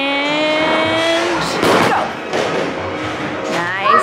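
A bowling ball thuds onto the wooden lane about one and a half seconds in, then rumbles as it rolls toward the pins. Before the thud, a voice draws out one long call that rises and then holds.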